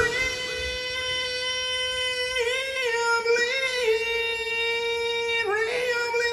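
A single long held note left ringing after the rest of the band stops, as the final note of the rock song. It bends up and back down twice in the middle and breaks off near the end.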